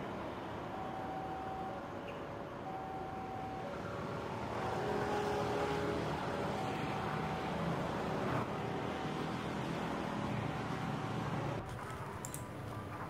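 Distant train approaching along the line, its running noise growing a little about four seconds in. A faint two-tone signal alternates between a higher and a lower note about once a second throughout.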